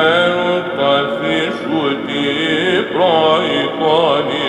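Byzantine chant: men's voices sing a slow, ornamented melodic line with sliding pitch over a steady low held drone note (the ison).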